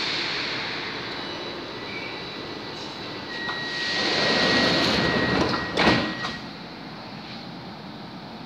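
Metro train doors closing: a steady warning tone for about three seconds over the hum of the train, ending with the knock of the sliding doors shutting about six seconds in.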